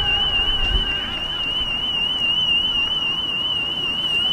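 Facility alarm sounding: one steady high-pitched tone with a fast warble, unbroken, over a low rumble.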